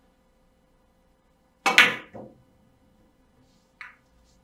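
Carom billiard balls and cue: two sharp clacks in quick succession, the cue tip striking the cue ball and the cue ball hitting the first object ball, then a softer knock a moment later. Near the end a single light click as the cue ball meets the red ball, completing the point.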